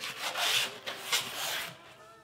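Cardboard rubbing and scraping as a small box is opened and its contents are slid out, in several swells that die away near the end.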